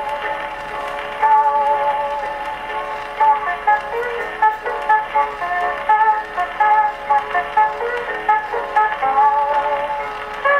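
Hawaiian guitar music from a Pathé vertical-cut record played acoustically on an Edison disc phonograph: a steel guitar's held notes glide into pitch over a plucked accompaniment. The sound is thin, with no deep bass and little top.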